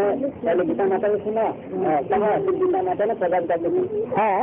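Several voices talking at once, overlapping and continuous.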